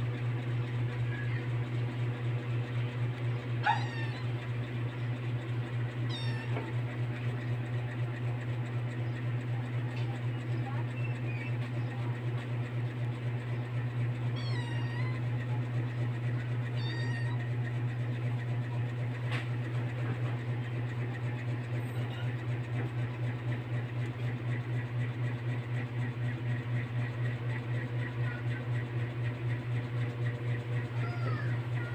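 A steady low hum, with short, high, gliding animal calls heard several times, and one sharp click about four seconds in.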